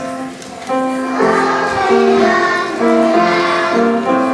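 A group of preschool children singing together over musical accompaniment. After a brief dip, the accompaniment picks up again a little under a second in and the children's voices join about a second in.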